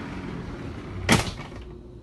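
A single sharp thump about a second in, over a steady low hum.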